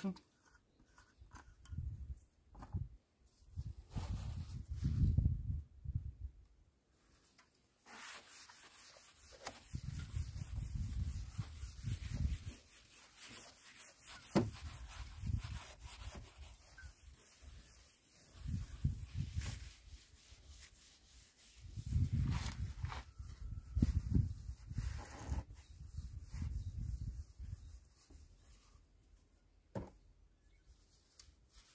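A paper cloth wet with cleaner rubbing and wiping over a car's painted tailgate, in uneven strokes, while low rumbles come and go.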